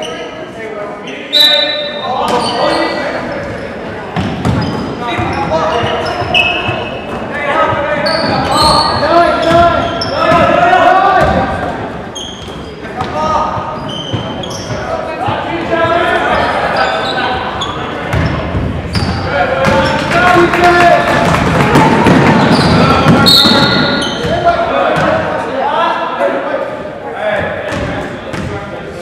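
Basketball game sounds in a gym: the ball bouncing on the hardwood floor amid players and spectators shouting and calling out, echoing in the hall, with a few short, high sneaker squeaks.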